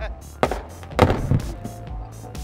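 An explosive charge blasting bedrock goes off about a second in: one sharp bang with a short rumble after it, over background music.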